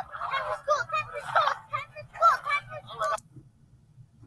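Cartoon voices from an animated film shouting excitedly, the young clownfish calling for his father to get up, cut off abruptly about three seconds in, over a faint low hum.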